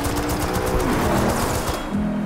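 Automatic gunfire: a rapid, continuous burst of shots that stops just before the end, mixed over film score music.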